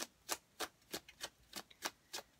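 A deck of tarot cards being shuffled overhand, the packets of cards slapping together in a quick, uneven run of soft clicks, about four or five a second.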